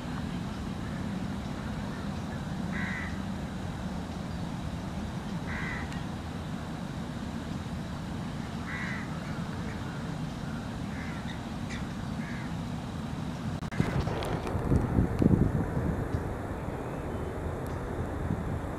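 A crow cawing at intervals of roughly three seconds, over a steady low rumble. About fourteen seconds in, a louder burst of rumbling noise, like wind or handling on the microphone, runs for a couple of seconds.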